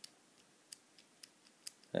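A few faint, sharp metallic clicks about half a second apart from a tension bar moving in the keyway of a brass euro-profile cylinder lock as the lock is handled.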